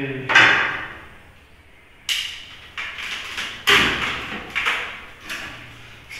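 Hard plastic clunks and knocks from a jug blender being handled with its motor off: the jar and lid are set down and the jar is lifted off its motor base. A sharp knock just after the start, then a run of about seven clunks from about two seconds in, the loudest near the middle.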